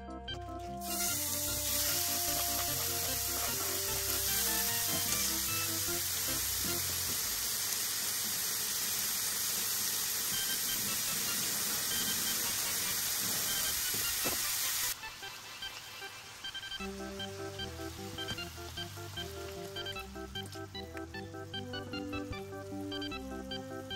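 Pork belly strips sizzling in a nonstick frying pan: a loud, even hiss that starts about a second in and cuts off suddenly about fifteen seconds in. Light background music plays under it and carries on alone afterwards.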